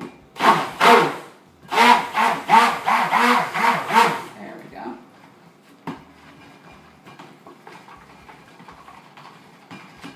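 Hand-held stick blender pulsed in quick short bursts, about eight of them, in a cup of cold process soap batter, its motor pitch rising and falling with each pulse as it mixes colourant into the batter. After about four seconds the pulsing stops, leaving faint knocks and rubbing from the blender in the cup.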